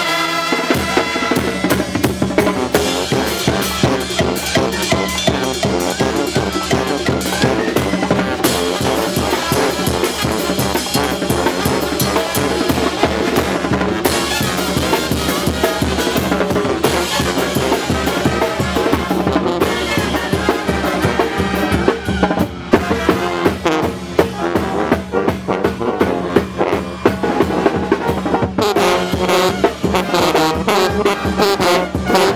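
A Mexican banda de viento (brass band) playing loudly: snare drum, bass drum and cymbals drive a steady beat under trumpets, trombones, clarinets and sousaphones. The drum strokes stand out more sharply in the last third.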